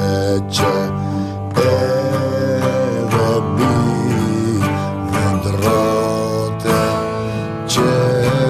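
Cretan laouto played with a pick in Cretan folk style, plucked notes ringing under a held, wavering melody line, in phrases with short breaks between them.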